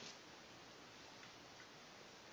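Near silence: faint steady background hiss, with one or two barely audible ticks.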